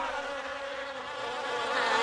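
Buzzing of flying insects, a steady droning hum that dips a little in the middle and swells again near the end.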